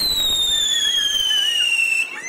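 A ground firework spraying sparks, with a steady hiss and a loud, shrill whistle that slides slowly down in pitch.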